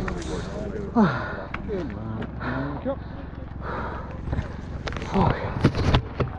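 Downhill mountain-bike race run: a steady rumble of wind and bike rattle with sharp knocks, broken by several short vocal cries or whoops that fall steeply in pitch.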